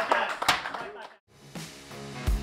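Men's voices and a sharp clap in a locker room fade out. After a moment of silence just past halfway, background music with guitar begins.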